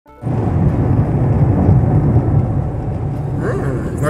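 Noise inside a moving car's cabin, with road and engine noise and music playing over it.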